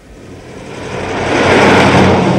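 A motor vehicle driving past: a steady engine hum under a rush of noise that swells from quiet at first to its loudest near the end as it goes by.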